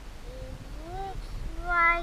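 A young child's wordless vocalizing: a rising, drawn-out "ooh" about half a second in, then a louder, steady high-pitched note near the end.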